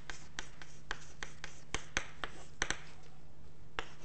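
Chalk writing on a blackboard: a string of sharp taps and short scratches as the chalk strikes and drags across the board, about two or three a second, with a short pause near the end.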